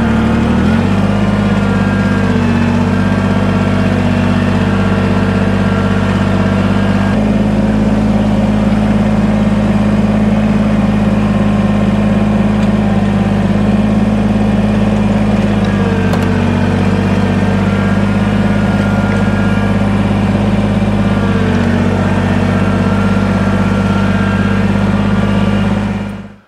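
Kubota BX23S sub-compact tractor's three-cylinder diesel engine running steadily while the tractor works its front loader, the engine note shifting several times as throttle and load change.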